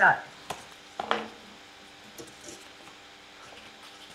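Scissors cutting a cardboard egg box, with a sharp click about half a second in and a few faint snips and rustles after. A couple of brief voice sounds come near the start.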